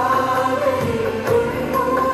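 Christian devotional song for a prayer dance: voices singing a melody together over instrumental accompaniment, steady and continuous.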